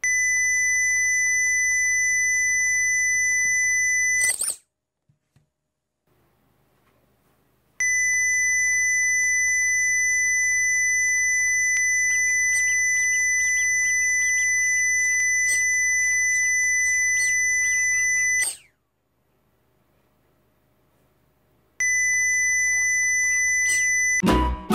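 A small robot speaker sounding a steady, high-pitched 2,000 Hz beep that is cut off twice by a short squeak from a squeezed rubber duck. Each squeak is loud enough for the robot's microphone to silence the beep for about three seconds before it comes back on.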